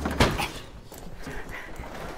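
A single thump just after the start, then quick running footsteps, about two steps a second.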